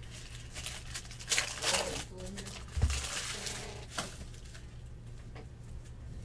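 Foil trading-card pack wrapper crinkling and tearing in several short bursts as the pack is ripped open and handled, with a soft thump near the middle.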